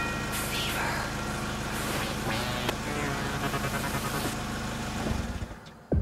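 A radio broadcast of a Bollywood pop song, full mixed music with a steady low bass line, fading out about five seconds in.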